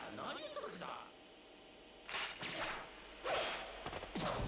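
Anime episode audio playing quietly: a character's voice in the first second, a short pause, then two short swishing sound effects.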